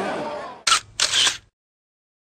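Crowd chatter fading out, then two short camera shutter clicks about a third of a second apart as a photo is taken, after which the sound cuts to silence.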